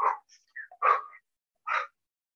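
A woman's short, breathy vocal bursts of effort, three of them a little under a second apart, in time with the jumps of push jacks.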